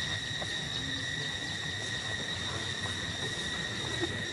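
Steady high-pitched insect drone, one unbroken whine, with faint scattered rustles of macaques walking through dry leaf litter.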